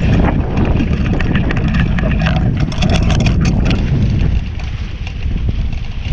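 Wind buffeting the microphone over the rush and spatter of water off a Hobie 16 catamaran's hulls moving at speed. The splashy crackle is strongest for the first four seconds, then eases off.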